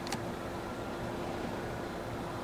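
Steady room background noise: an even hiss with a faint low hum, and one light click just after the start.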